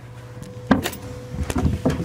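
Four sharp knocks and clunks, the first and loudest about a third of the way in, over a faint steady hum.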